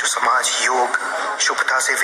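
Speech only: a voice speaking Hindi in a continuous discourse.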